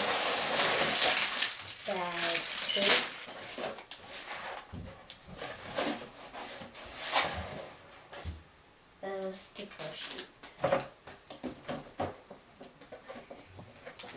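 Plastic bags of LEGO pieces crinkling and rattling as they are pulled out of a cardboard box. The crinkling is densest in the first three seconds, followed by scattered rustles and clicks.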